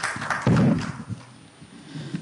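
A loud, dull thump about half a second in, the sound of a handheld microphone being handled, then quieter hall noise as the mic passes between panelists.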